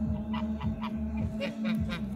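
Domestic geese honking: about six short calls in two quick runs of three, the first run in the first half and the second a little past the middle. A steady low hum runs underneath.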